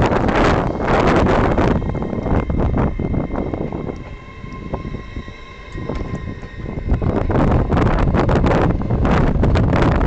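LNER Azuma (Hitachi bi-mode) train pulling away past the platform, its coaches rumbling on the rails, with a steady whine of several pitches from the train in the quieter middle stretch. Gusts of wind on the microphone are loudest at the start and again near the end.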